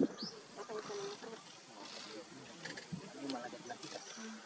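Female leopard and her cub at close range making a run of short, soft low calls to each other, after a sharp sound right at the start.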